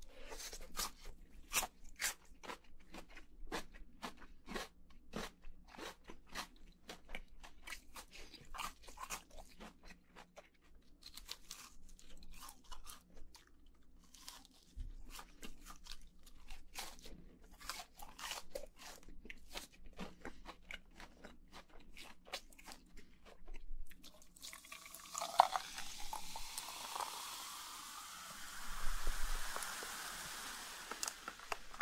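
Close-miked crunchy chewing of crisp fried chicken nuggets and pickled radish cubes, a dense run of sharp crunches. About six seconds before the end, a plastic cola bottle is opened and the soda fizzes with a steady hiss.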